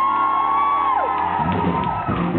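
Live band with a male singer: one long high sung note slides up, is held, and falls away about a second in, over a sustained band chord. The drums and band then come back in with a rhythmic groove.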